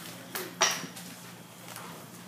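Two quick knocks a quarter second apart, the second louder with a short bright clink to it, followed by faint room noise.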